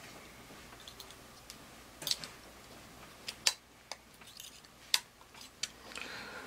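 Scattered small metallic clicks and taps of steel pliers on a replaceable-blade folding knife as the dull blade is worked off and a new one fitted, loudest about two seconds in and again near five seconds.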